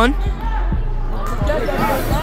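Basketball dribbled on a hardwood gym court: a few bounces about a second apart, over faint voices.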